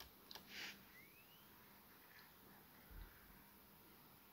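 Near silence: room tone with a faint low hum, a faint click about a third of a second in, and a soft low thump near three seconds.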